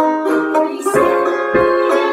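Banjo being played, a steady run of picked notes and chords, a few to the second.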